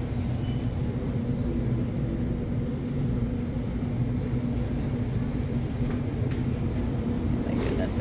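Steady store background: a constant low hum, with a faint murmur of voices.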